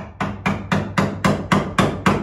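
A hammer tapping in quick, even strikes, about four a second.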